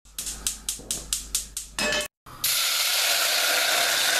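Gas hob burner's electric igniter clicking rapidly, about eight clicks at an even four or five a second, then after a short break a steady, loud hiss of gas burning at the burner.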